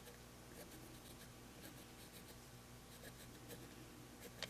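Faint scratching of a pencil tracing lines through a stencil onto a coaster, in many short strokes, over a low steady hum.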